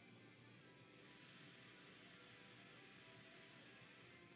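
Near silence, with a faint steady high hiss from about a second in until the end: air being drawn through a rebuildable dripping atomizer while its coil fires.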